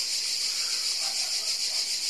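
Steady high-pitched insect chorus, a continuous shrill buzzing with a slight pulsing texture.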